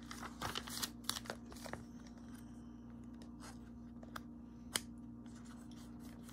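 Glossy catalogue pages being handled and turned: paper rustling with a scatter of sharp crinkles and taps, busiest in the first couple of seconds, over a steady low hum.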